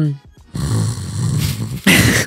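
A person imitating snoring: a low, rough rumble lasting about a second and a half.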